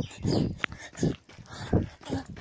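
Heavy panting of a tired long-distance runner, a loud breath about every two-thirds of a second.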